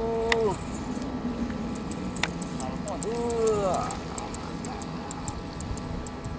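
A person's drawn-out wordless vocal sounds, heard twice: once at the start and once about three seconds in. Faint, quick high ticking runs between them, about five ticks a second.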